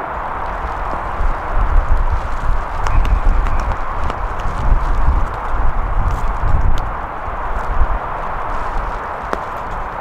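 Wind buffeting the microphone in gusts: an uneven low rumble that swells through the middle few seconds, over a steady outdoor hiss.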